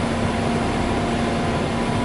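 City buses idling at a stop: a steady engine hum over constant street traffic noise.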